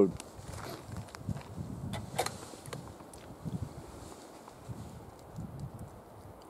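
A .300 Winchester Magnum bolt-action rifle being reloaded: a few faint metallic clicks and knocks, the clearest about two seconds in, over low background noise.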